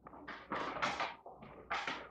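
A small plastic bag of nails being handled and crinkled in a child's fingers, in a few short rustling bursts with light taps.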